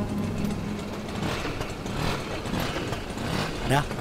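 Auto-rickshaw engine idling steadily, with voices talking over it and a louder voice near the end.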